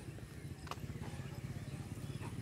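Faint, quick footsteps on a dirt road, with one small click about two-thirds of a second in.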